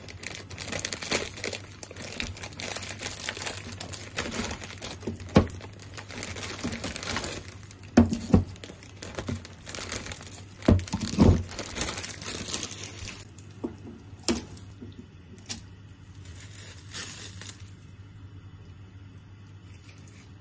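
Plastic wrapping of frozen boiled udon crinkling and tearing as the bag and the individual portion packs are opened by hand, with several dull thumps in the middle as the frozen noodle blocks are set down. The crinkling stops about two-thirds of the way through, leaving a few light clicks.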